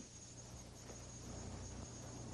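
Faint steady hiss with a low hum underneath: background noise of the soundtrack, with no distinct event.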